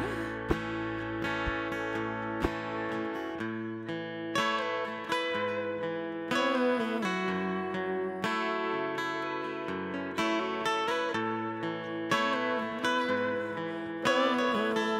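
Acoustic guitar playing an instrumental passage of a slow song, picked notes and chords ringing out one after another with no singing.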